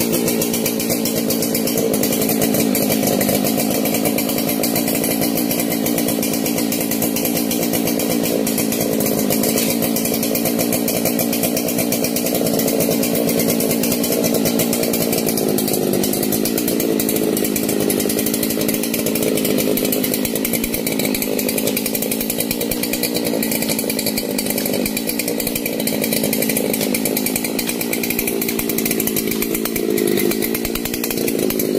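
Chainsaw engine running steadily at an even speed, with a few brief dips.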